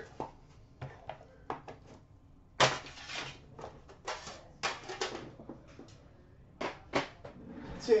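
Scattered clicks and short scraping rustles of card boxes being handled and moved on a counter. The longest and loudest scrape comes about two and a half seconds in.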